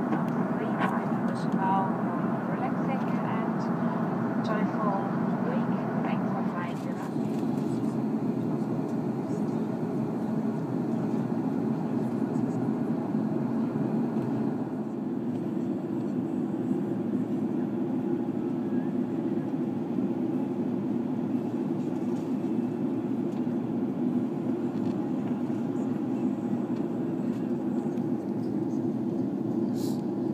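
Steady cabin noise inside an Airbus A340-600 airliner in flight: an even, low rush of airflow and engine drone. A voice over the cabin PA goes on through the first seven seconds or so.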